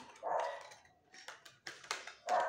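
Card-stock paper box being folded and pressed closed by hand: a brief muffled sound, then a few short, crisp paper clicks and crinkles in the second half.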